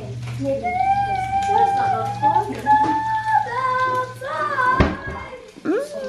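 A child singing in a high voice, long held notes stepping up in pitch, over a low steady hum that stops near the end. A sharp knock sounds just before the end.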